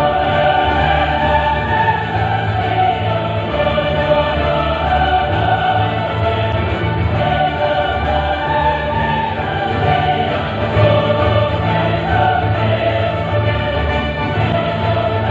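Orchestra with brass and a large choir of voices singing a classical piece together, played back from a projected video over a hall's sound system.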